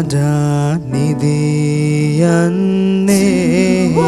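A cappella vocal group singing a slow lullaby: a male lead voice holds long, gently bending notes over sustained humming harmonies from the backing singers.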